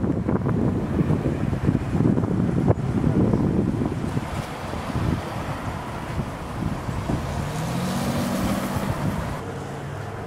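Outdoor roadside noise with wind rumbling on the microphone. A vehicle passes about eight seconds in.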